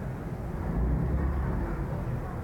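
Low, steady background rumble with no speech.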